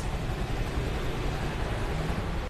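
Steady traffic noise: a low engine hum under an even hiss, with no sudden sounds.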